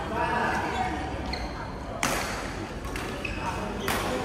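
Badminton racket hitting a shuttlecock twice, about two seconds apart, sharp cracks during a rally, over a background of voices in the hall.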